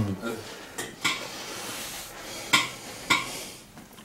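Handling sounds: cloth rustling and four short, sharp knocks as hands press and move over a person's back and arm on a padded leather couch.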